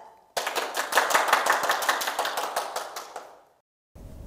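A fast, dense run of sharp clicks begins suddenly and fades away over about three seconds.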